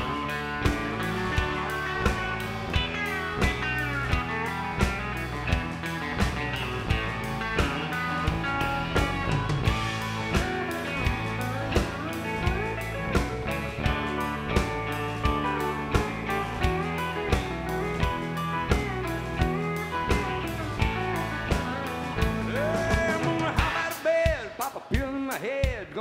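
Live honky-tonk band playing an instrumental break: a lead electric guitar with bent notes over bass, keys and a steady drum beat. Near the end the drums drop out.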